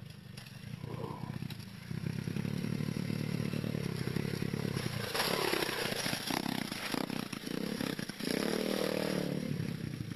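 Small motorcycle engine revving hard under load as it climbs a hill, its pitch rising about halfway through and again near the end, with rattling and scraping noise over it.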